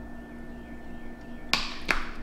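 Cap of a small hand cream tube being worked with the fingers: two short sharp clicks about a third of a second apart near the end, over quiet room tone with a faint steady hum.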